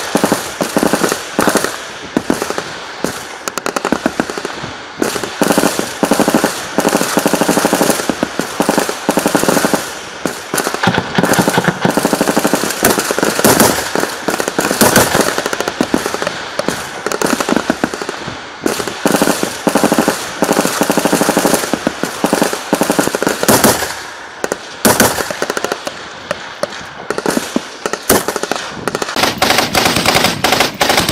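Automatic weapons firing in long bursts of rapid shots, with short lulls between bursts.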